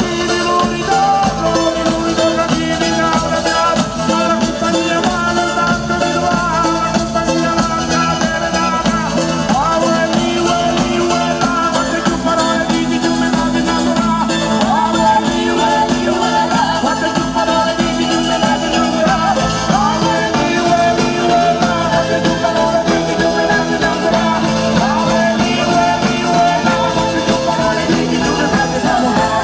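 Live pizzica (Salento tarantella) played by a folk band: mandolin, violin and tamburello frame drum over a drum kit, with a woman singing. The music runs loud and unbroken throughout.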